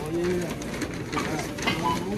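A person's voice making short, low hummed 'mm' sounds: one held note near the start and a falling one near the end, over background chatter.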